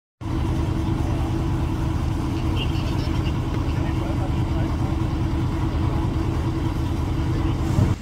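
An engine running steadily at constant speed close by, with a low hum, and faint voices underneath.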